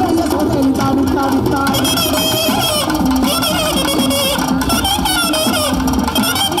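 Instrumental Tamil folk dance music from a live stage band with electronic keyboards, played over a beat. A high, wavering melody line comes in about two seconds in.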